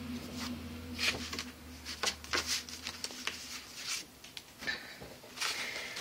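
Stiff cardstock pages and flaps of a handmade album being handled and folded open, giving a scatter of light, irregular paper rustles and taps over a faint steady hum.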